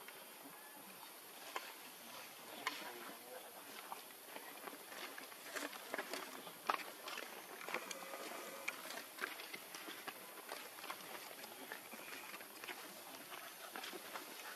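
Scattered light clicks, taps and rustles of monkeys moving and picking at stone and leaf litter, over a steady high hiss.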